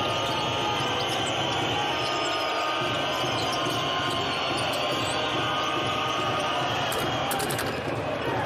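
Live basketball arena sound during play: steady crowd noise in a large hall, with a basketball being dribbled on the hardwood court.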